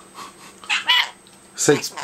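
Rainbow lory chattering: two short calls, a high, squeaky one about three-quarters of a second in and a sharper one falling steeply in pitch near the end.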